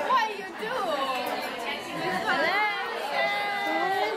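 Chatter: several voices talking over one another around a dining table, with no words clear. Near the end one voice holds a long, steady vowel.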